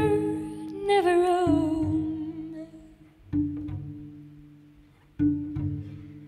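Slow jazz ballad for female voice and cello: a sung note with vibrato about a second in, then two plucked cello notes, each ringing and slowly dying away.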